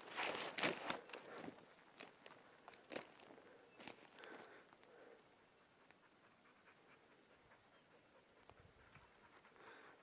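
Faint footsteps crunching over dry twigs and brush on a forest floor, a scatter of irregular steps in the first half.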